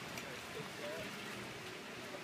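Faint voices in the background, with a brief snatch of speech about halfway through, over quiet outdoor ambience.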